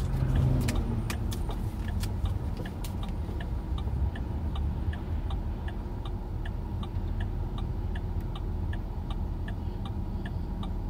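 A car's turn-signal indicator clicking steadily, about three clicks a second, heard inside the cabin over the low rumble of the moving car.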